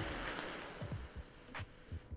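A person blowing out a long exhale of vape vapour: a breathy hiss that fades away over about a second.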